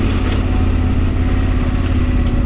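KTM 1290 Super Adventure R's V-twin engine running at a steady, even pace while the bike rides along a wet gravel track.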